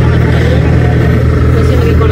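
Pickup truck driving, heard from its open cargo bed: a loud, steady low rumble of engine, road and wind noise.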